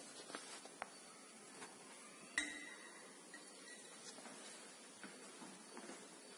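Laboratory glassware clinking: one sharp glass clink with a short ring about two and a half seconds in, and a few fainter clicks of glass being handled around it, over quiet room tone.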